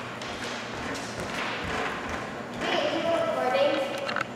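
Bare feet stepping across a hard studio floor, then a person's voice speaking indistinctly over the last second or so.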